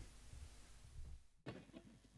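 Near silence: a faint low hum with a few faint clicks in the second half.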